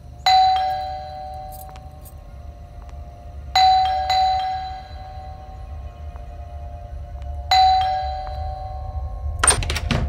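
Two-note ding-dong doorbell chime, a higher note falling to a lower one, rung about three times: once near the start, twice in quick succession about four seconds in, and again near eight seconds. A steady low rumble runs underneath, and a sharp short whoosh comes near the end.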